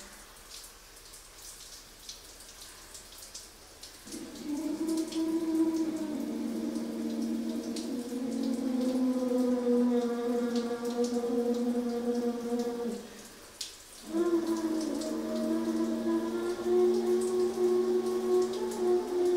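Trumpet playing long, slow held notes: the first comes in about four seconds in, moves to a lower note, breaks off briefly near the end, and another long note follows.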